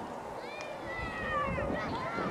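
High-pitched children's voices calling and squealing, several overlapping cries that glide up and down in pitch.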